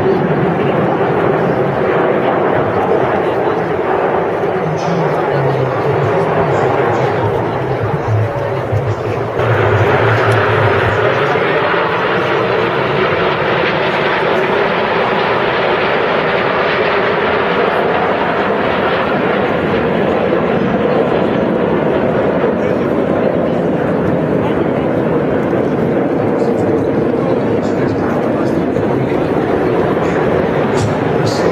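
Jet noise from the Frecce Tricolori's Aermacchi MB-339 jets flying in formation: a continuous rushing roar that gets suddenly louder and brighter about nine seconds in, over indistinct crowd chatter.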